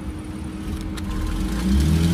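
Minivan engine running steadily at idle, then growing louder near the end as the van begins to pull away.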